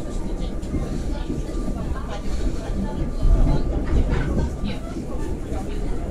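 Inside the carriage of a PKP EN57 electric multiple unit running along the track: steady low rumble and rattling of the coach, swelling a little about halfway through.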